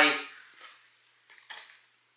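A man's spoken word trailing off, then a mostly quiet pause with a few faint light taps and rustles from a small cardboard product box being turned over in the hands.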